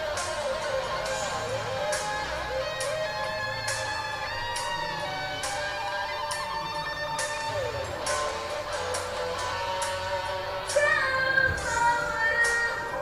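Rock band music with an electric guitar solo carrying the melody. A woman's singing voice comes back in near the end.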